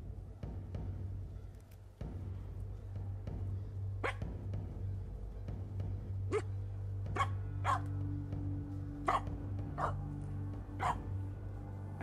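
Finnish Spitz barking in sharp single barks, about one a second, starting about four seconds in, over steady background music; the owner takes it to be after a squirrel.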